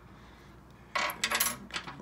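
Steel bolt and washers clinking together in the hand as a washer is slipped onto a mount bolt: a quick cluster of light metallic clinks starting about a second in.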